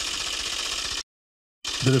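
Rapid mechanical clatter of a teletype-style typing sound effect. It cuts off abruptly about a second in and starts again near the end.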